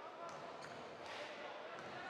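A handball bouncing a few times on the hard indoor court floor, at uneven intervals, over low arena murmur and voices.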